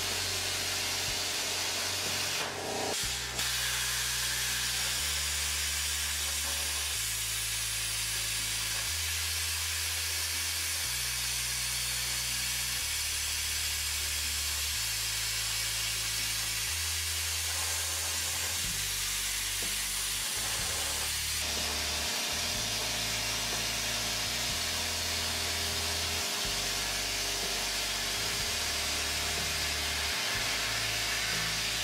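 PlasmaCAM CNC plasma torch cutting metal plate: a steady hiss of the arc and cutting air. Beneath it a low hum shifts in pitch every couple of seconds.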